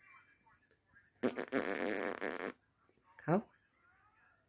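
A baby blowing a raspberry: a loud, wet lip buzz lasting a little over a second, followed by a short spoken "How?".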